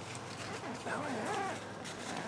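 A hushed voice speaking briefly, about a second in, over faint background noise.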